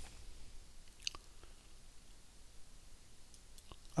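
Quiet room tone with a few faint, short clicks, one sharper than the rest about a second in.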